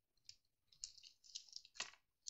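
Faint, scattered clicks of resin diamond-painting drills being picked up from a tray and pressed onto the canvas with a drill pen, one slightly louder click near the end.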